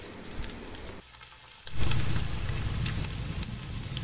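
Sliced onions and garlic sizzling as they fry in hot oil and ghee in a stainless steel pot. The sizzle gets louder about two seconds in.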